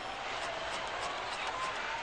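A steady rushing noise with a faint thin tone that rises slightly through it.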